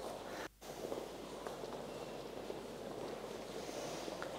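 Low room noise with faint shuffling footsteps on a wooden studio floor; the sound cuts out for an instant about half a second in.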